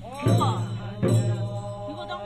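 Low, deep mantra chanting. Each phrase starts with a strong low tone, and new phrases begin about once a second, with higher sliding voice sounds above them.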